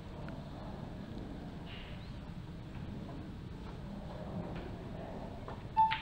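Quiet hall room tone, then near the end a single short electronic beep from the match shot clock as it counts down to five seconds.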